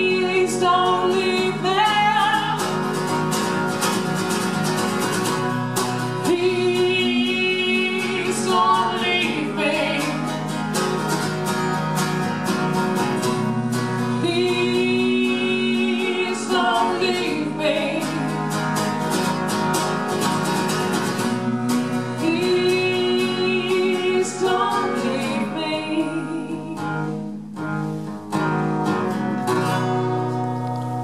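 Live singing with acoustic guitar strummed alongside, the vocal coming in phrases of long held notes. The music drops back briefly near the end.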